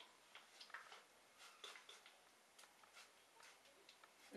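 Near silence, with several faint, short spritzes and clicks from a trigger spray bottle misting water onto hair.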